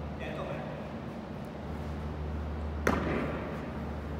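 A thrown tennis ball hits the wall once, a single sharp thud with a short echo from the large hall, about three seconds in.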